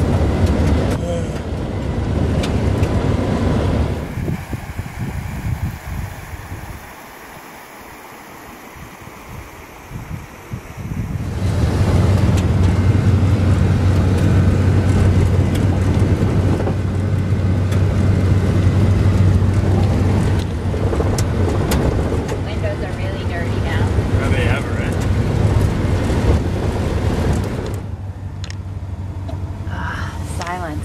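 Camper van driving on a gravel road, heard from inside the cab: a steady low rumble of engine and tyre noise, quieter for a stretch from about 4 to 11 seconds in and dropping again near the end.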